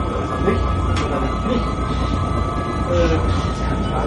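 A steady low rumble with a constant high whine above it, and faint voices underneath.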